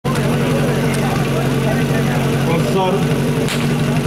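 Portable fire-sport pump engine idling steadily, with a single sharp crack near the end, the start signal for the fire attack.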